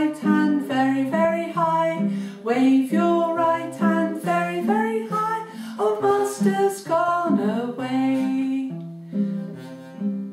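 A woman singing a children's action song, accompanying herself on a strummed acoustic guitar. The singing stops near the end, leaving the guitar chords to ring on alone.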